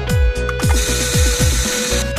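Upbeat background music with a steady beat. About a second in, a small food chopper whirs for about a second as its blade chops garlic cloves.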